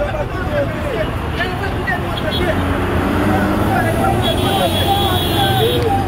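Several people talking at once in the background, over a steady low rumble. A faint steady high tone joins about four seconds in and stops just before the end.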